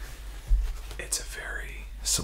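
A man whispering, with a single low thump about half a second in.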